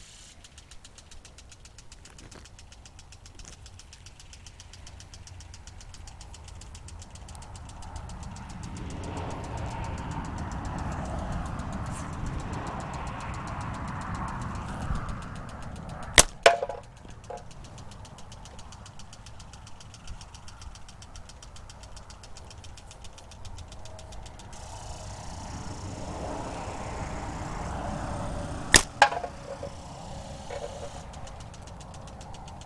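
Two slingshot shots, about halfway through and near the end, each a sharp snap followed a moment later by a second crack. Under them a vehicle engine rumbles in the background, swelling and fading twice.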